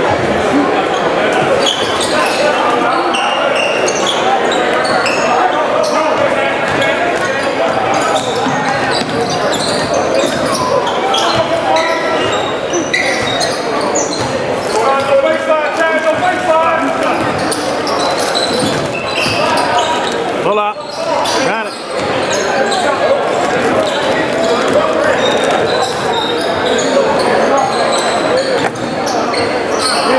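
Basketball bouncing on a hardwood gym floor during play, heard amid the talk and calls of players and spectators, echoing in a large gym.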